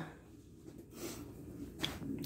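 Quiet room tone with a faint low hum, and one soft click near the end.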